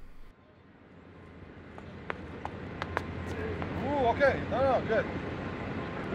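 Outdoor field ambience with wind-like noise growing steadily louder, a few sharp taps about half a second apart around two to three seconds in, and a voice calling out near the end.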